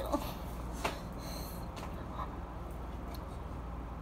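Steady low background hum with a few faint clicks and rustles of handling; the sharpest is a single click about a second in.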